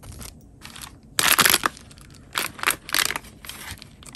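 Clear plastic bag crinkling and paper rustling as the hands handle it, in irregular bursts, the loudest a little over a second in.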